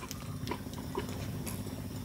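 Low steady background hum with a few faint, light clicks about half a second apart.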